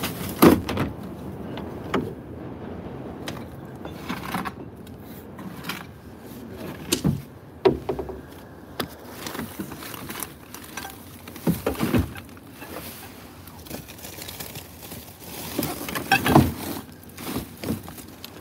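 White plastic bags rustling as clothing is stuffed into them and loaded into a car, with several sharp knocks and thumps scattered through, the loudest about half a second in.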